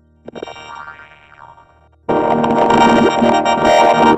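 Audio run through the 4ormulator vocoder effect, which turns it into synthesizer-like chords. A quieter chordal passage fades out, then a loud, dense chord starts suddenly about two seconds in and holds.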